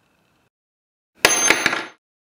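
A steel nail dropping onto a hard surface: three quick metallic clinks with a bright ring, starting about a second in and cut off abruptly.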